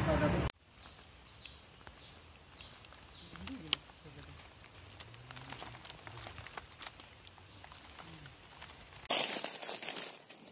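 Small bird giving short, high, downward-sliding chirps, repeated at irregular intervals in a quiet forest. A single sharp click about three and a half seconds in, and a loud burst of rushing noise near the end.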